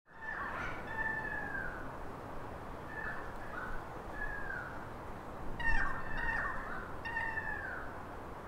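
Birds calling outdoors: a series of drawn-out, clear calls, each falling slightly in pitch at its end, repeated every second or so with short gaps, over a steady outdoor background hiss.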